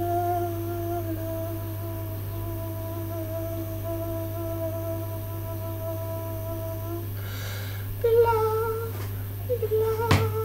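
A single person humming: one long steady note held for about seven seconds, a breath in, then humming again on a slightly higher note.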